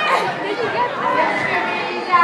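Crowd of spectators in a gymnasium chattering, many voices overlapping at once.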